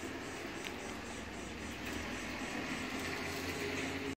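Steady low background hum and hiss with no distinct event standing out.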